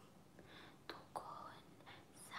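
Near silence: faint whispered speech with two soft clicks about a second in.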